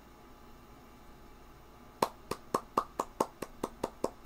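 Quiet room tone, then about halfway through one person starts clapping his hands in a steady run of about four to five claps a second.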